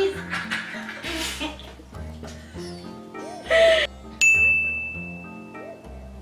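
Background music with a repeating bass line, and about four seconds in a single bright ding rings out sharply and holds for nearly two seconds: an on-screen sound effect that comes with a pop-up Subscribe button.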